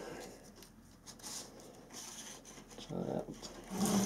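Faint scratchy rubbing of a fine paintbrush and fingertips on a plasticard strip as solvent weld is brushed along the joint.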